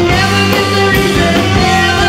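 Live band playing loudly, a drum kit keeping a steady beat under bass and pitched instruments.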